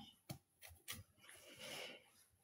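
Near silence: faint room tone with a few soft clicks in the first second and a brief soft rustle near the end.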